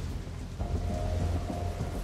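Steady rain with a deep, continuous thunder-like rumble underneath. About half a second in, a single held musical tone comes in over it.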